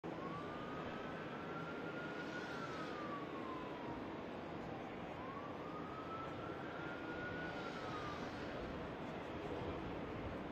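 Emergency vehicle siren wailing in two slow rise-and-fall cycles, each climbing for about two seconds and then dropping, over a steady rushing background noise.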